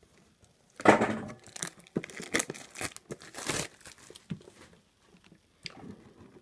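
Plastic shrink wrap being torn and crinkled off a metal Pokémon card tin, a string of irregular rips and crackles, the loudest about a second in, dying away after about four seconds.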